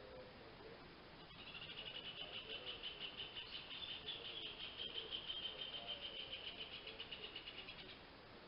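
A high, rapid pulsing trill from an unseen animal starts about a second in and goes on steadily, then stops abruptly at the end.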